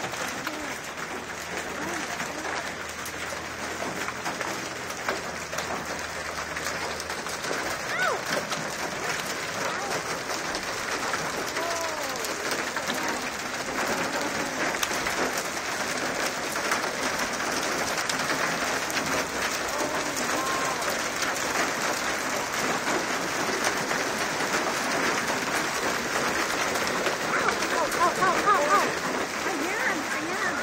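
Hail pelting pavement and a car, a dense, steady clatter of many small impacts that grows a little heavier as it goes on, loudest near the end.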